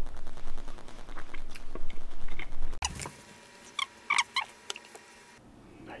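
A person chewing food close to the microphone. After a sudden cut it is much quieter, with a few light clicks.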